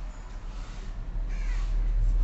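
A crow cawing once, briefly, about one and a half seconds in, over a steady low hum.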